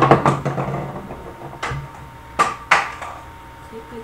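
Hard objects being handled and knocked together close to the microphone: a burst of clattering right at the start, a knock about a second and a half in, then two sharp knocks in quick succession about two and a half seconds in.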